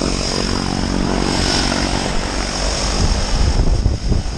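Propeller airplane engine running close by, a steady drone with a high whine over it.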